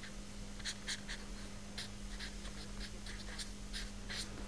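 Faint scratching of writing strokes, a dozen or so short strokes in a row, over a steady low hum.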